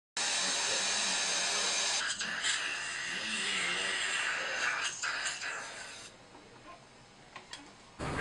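Dental suction hissing steadily in a patient's mouth, then tailing off and stopping about six seconds in.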